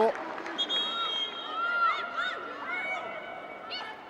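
High-pitched shouts and calls from players on the pitch, carrying over a steady hiss of open-air stadium ambience, with no commentary over them.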